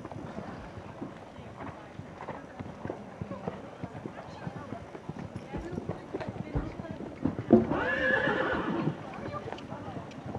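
Horse's hoofbeats, a run of soft thuds as it canters around a sand arena. Near the end a loud, drawn-out call of about a second and a half rises over the hoofbeats.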